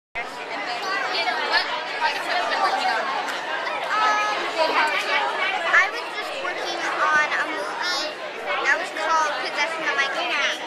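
Overlapping talk: people speaking over the chatter of a crowd.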